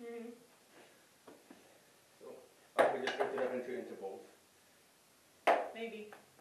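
Women's voices: a sudden loud burst of shouting and laughter about three seconds in, lasting over a second, and another short loud outburst near the end, with a few quiet vocal sounds before.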